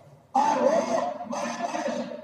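A man giving a sermon, his voice resuming after a brief pause at the start and running on in long, drawn-out phrases.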